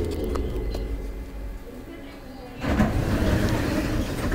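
Light-rail train running, heard from inside the car: a low rumble with the motor's falling whine dying away as the train slows, then a louder rushing noise setting in about two and a half seconds in.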